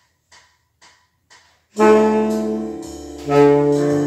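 Three faint clicks about half a second apart, a count-in, then about two seconds in a saxophone begins playing a slow jazz melody over a backing track with a bass line.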